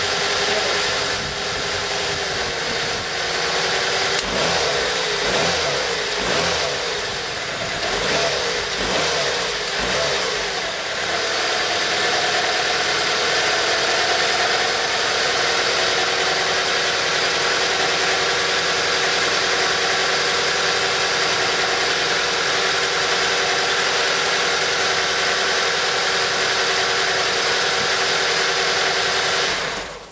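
Nissan Micra K11's four-cylinder petrol engine running on newly fitted homemade copper-core HT leads: its pitch rises and falls several times in roughly the first ten seconds, then it settles to a steady idle.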